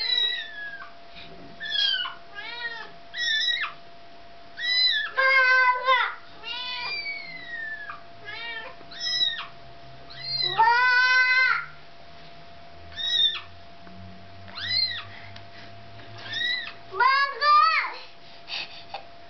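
A kitten mewing over and over in short, high-pitched calls, with a few longer meows about five and eleven seconds in. A faint steady hum runs underneath.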